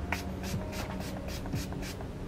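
Setting spray being misted onto the face from a small pump spray bottle: a rapid run of about nine short hisses, four or five a second.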